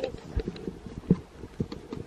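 A few soft, irregular knocks and rubs of handling noise from a hand-held camera being moved about.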